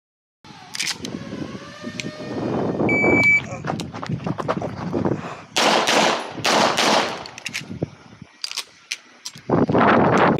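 An electronic shot timer gives its start beep, one short high tone, about three seconds in. About two and a half seconds later a quick string of pistol shots follows, each with a long echo, all within about a second and a half. Another loud report comes near the end.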